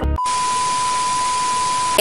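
Edited-in sound effect: a steady, single-pitch beep tone like a censor bleep, laid over loud, even white-noise hiss like TV static. It starts suddenly just after the music stops and holds level throughout.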